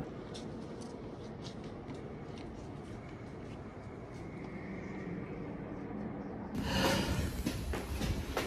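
Low, steady ambient hum of a vast reverberant church interior, with faint, irregular footsteps on the dome gallery walkway. About six and a half seconds in it switches abruptly to louder, closer footsteps and scuffing in a narrow stairwell.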